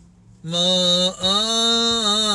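Solo male cantor chanting a Coptic church hymn unaccompanied, in long held notes. The voice comes in about half a second in, breaks off briefly just after a second, then carries on with a wavering pitch.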